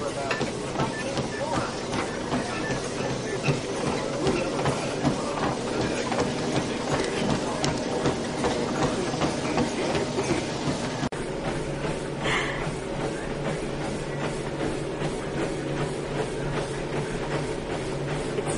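Running on a treadmill: a steady, rhythmic clatter of footfalls on the moving belt and deck, with background voices. The sound drops out for an instant about eleven seconds in.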